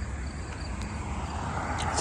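Outdoor street ambience: a steady low rumble with faint insect chirring, and a passing vehicle's noise swelling toward the end.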